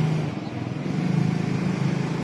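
A car's engine running slowly close by, a steady low hum over street noise.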